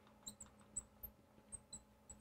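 Marker tip squeaking on a glass lightboard as words are written: about seven short, high squeaks.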